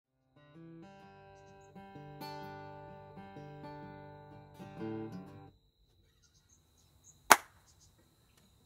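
Acoustic guitar picking single notes one by one and letting them ring and build up, then stopping abruptly about five and a half seconds in. Near the end a single sharp, loud click.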